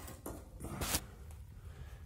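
Two brief scraping handling noises on a ceramic tiled floor, the louder one a little before the middle, over low room hum.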